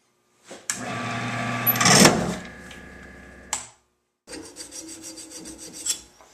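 Wood lathe running with a large Forstner bit boring into the end grain of a walnut burl blank: a harsh cutting and grinding noise over the motor hum, loudest about two seconds in, stopping suddenly about three and a half seconds in. After a brief gap comes a quieter scraping with rapid, even clicks.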